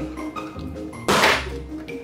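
Background music, with one sudden loud swish about a second in that fades out within half a second.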